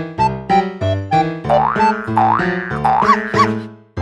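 Playful background music with a bouncing bass and keyboard line. In the middle, comic sliding pitch sweeps rise and fall three times; the music then fades out briefly just before the end.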